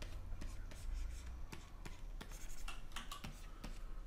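A pen stylus scratching across a graphics tablet in many short, irregular drawing strokes, over a low steady hum.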